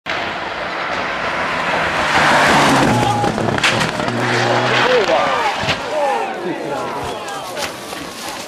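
Rally car engine running at high revs as the car goes by at speed, with a rush of tyre and road noise. From about five seconds in, spectators shout excitedly.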